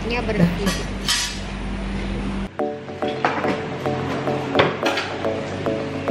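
Small metal clinks of dental instruments against brace brackets and wires. Background music with steady held tones comes in abruptly about halfway through.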